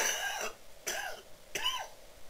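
A man coughing three times in quick succession, each cough a short harsh burst.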